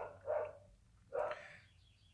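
A dog barking faintly twice, about a second apart.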